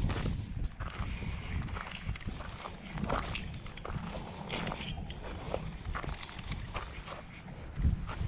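Wind rumbling on the microphone, with scattered light clicks and knocks.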